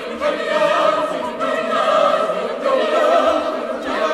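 Choir singing a spiritual, with long held notes.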